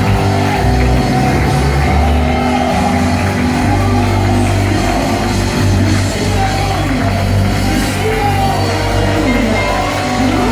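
Live worship music from a band with singing, sustained bass notes changing underneath a melody, playing continuously.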